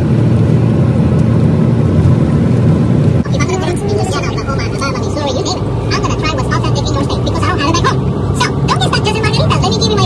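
Steady low engine and road rumble inside a moving bus. From about three seconds in, people's voices chatter over it.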